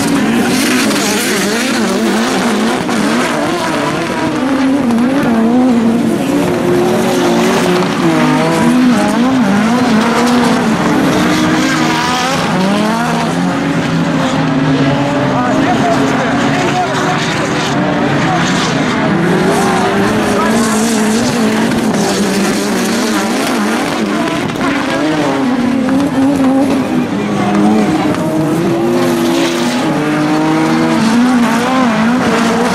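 Several autocross touring cars racing together on a dirt track, their engines overlapping and revving up and down continuously through the gears.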